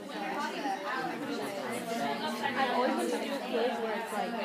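Background chatter: several people talking at once, with overlapping voices and no single clear speaker.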